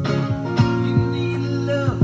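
Electric guitar strummed in a steady rhythm, with sustained chords.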